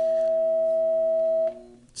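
A bell sounding one steady tone that cuts off about one and a half seconds in.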